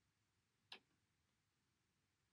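Near silence: room tone, with one faint short click about two-thirds of a second in.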